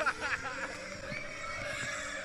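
Funfair ride starting up: a steady mechanical hum with riders' shrill, wavering cries over it.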